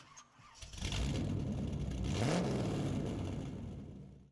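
Car engine starting about half a second in, running with a low rumble and one rising rev near the middle, then fading away toward the end.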